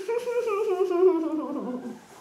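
A woman's long, wavering whine that slides down in pitch and fades out near the end: a fretful whimper of distress at a cockroach close by.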